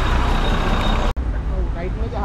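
Steady engine noise of a large vehicle running close by, with a thin high whine, cut off abruptly a little over a second in; after that, quieter outdoor noise with voices.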